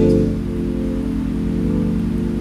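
Hammond B3 organ holding a sustained chord, steady and unchanging.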